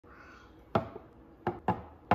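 Empty IKEA glass jars set down one at a time on a countertop: three sharp clinks with a short glassy ring, the last two close together.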